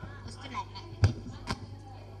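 Two dull knocks about half a second apart near the middle, over a steady low hum and faint voices.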